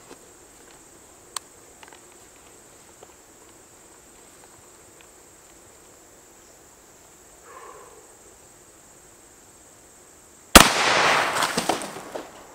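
A single 12-gauge shotgun shot from a rifled Mossberg 500 firing a hollow-point sabot slug, a sharp report near the end followed by a decaying echo lasting about a second and a half. Before it, only faint outdoor background with a few light clicks.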